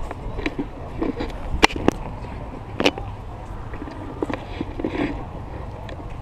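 Outdoor crowd ambience: scattered voices of people walking about over a steady low rumble of wind on the microphone. A few sharp clicks come in quick succession in the first half.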